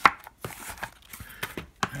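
Blu-ray cases being handled and set down. A sharp clack comes right at the start, followed by a few lighter knocks and clicks.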